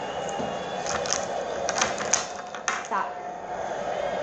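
A handful of short, sharp plastic clicks and taps as a lip balm tube is handled and its cap worked.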